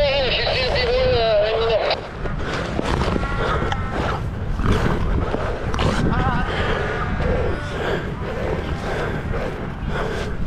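Cape fur seals calling: a long, wavering bleat in the first two seconds, then shorter calls from the colony, over a steady low rumble.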